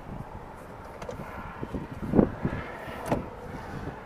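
Second-row tilt-and-slide seat of a Dodge Journey being released by its lever and pushed forward on its track, with a sharp click or knock about two seconds in and another about three seconds in over light handling rustle.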